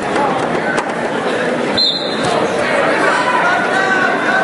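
Many spectators talking and calling out at once in a gymnasium, with the echo of the hall, and a couple of brief knocks in the middle.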